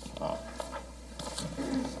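A man's brief, hesitant "uh" with faint voices in a quiet meeting room, over a steady low hum.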